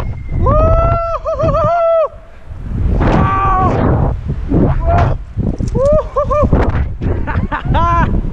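A man yelling in about four long, high-pitched cries, some wavering, as he free-falls on a bungee jump, with wind rushing over the action-camera microphone.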